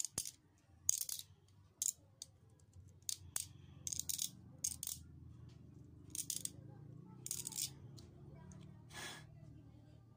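Kitchen knife shaving a plastic ballpen barrel: about ten short, sharp scrapes at irregular intervals, over a low, steady background hum.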